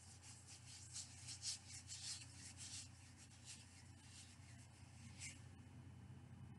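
Hands rubbing lotion into the skin: faint, soft swishing strokes, most of them in the first three seconds, then a few single strokes.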